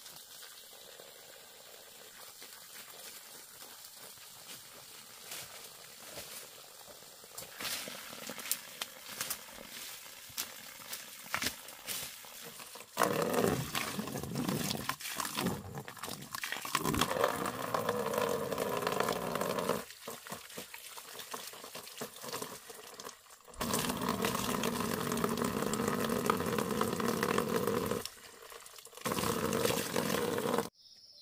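Scattered crunching steps in dry leaf litter, then from about a third of the way in, water running and splashing into a plastic basin in several long stretches with short breaks.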